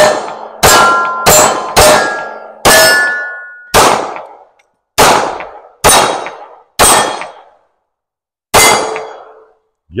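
Ruger Security-9 Compact 9 mm pistol fired ten times, one shot every half second to a second with a longer pause before the last. Several shots are followed by the short metallic ring of a steel target being hit. The ten shots empty a ten-round magazine, and the slide locks back on the last round.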